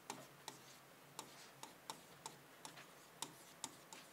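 Faint, irregular ticks of a pen tapping and stroking on an interactive touchscreen board during handwriting, about two or three a second in an otherwise near-silent room.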